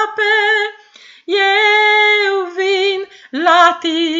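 A woman singing a Christian hymn in Romanian, unaccompanied, heard over a video call. She sings long held notes, some with vibrato, with short breaths about a second in and again just after three seconds.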